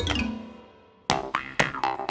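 Children's cartoon music. A falling slide in pitch fades away, there is a short gap, and then about a second in a bouncy tune of short plucked notes with clicks starts, about three or four a second.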